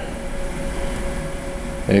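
Steady background hum and hiss with a faint, steady whine, the room's machinery noise heard in a pause between words.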